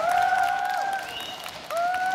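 Audience applauding after a song, with two long, held high calls from the crowd, one at the start and one near the end, each gliding up, holding, then dropping away.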